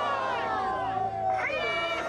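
Protesters chanting, several voices calling out in long drawn-out shouts that fall in pitch and then rise sharply near the end.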